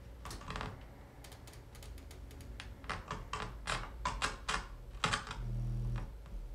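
A run of quick clicks and taps as buttons on a small desk-top device are pressed and handled. Near the end a steady low hum swells up, a low tone of the kind played through the chair's transducers.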